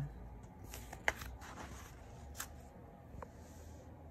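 Faint rustle of a picture book's paper page being turned by hand, with a few light handling clicks, the sharpest about a second in.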